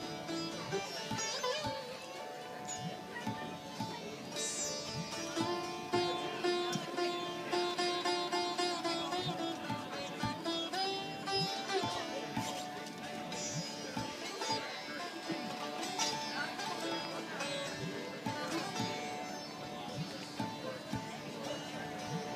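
Sitar played solo: a melody of plucked notes, some bent in pitch, ringing over steady drone strings.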